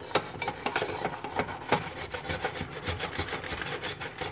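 Pumice stone scrubbing a chrome stove drip pan in quick repeated back-and-forth strokes, scraping off baked-on grease softened with oven cleaner.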